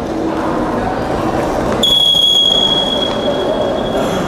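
Referee's whistle: one long, steady, high-pitched blast starting about two seconds in and lasting about two seconds, over the steady noise of an indoor sports hall.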